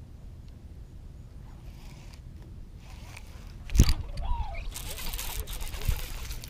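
Handling noise on the body-worn camera: a quiet low rumble, then a sharp knock about four seconds in, followed by rustling and scraping as a jacket sleeve rubs over the camera.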